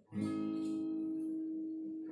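Steel-string acoustic guitar with a capo: one chord strummed just after the start and left to ring out, slowly fading.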